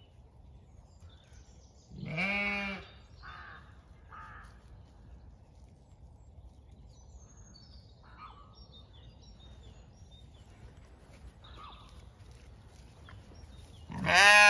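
Zwartbles sheep bleating: one loud bleat about two seconds in, with another starting at the very end. Faint short chirps and calls in between.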